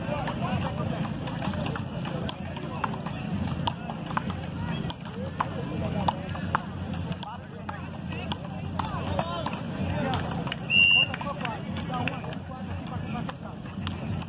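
Untranscribed chatter of voices with scattered sharp clicks, and a short high-pitched tone about eleven seconds in. Near the end come sharp knocks of wooden frescobol paddles hitting the rubber ball as a rally gets going.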